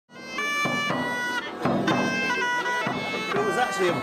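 Bagpipe music: a melody of held notes changing about every half second over a steady low drone, fading in over the first half second. A voice starts speaking right at the end.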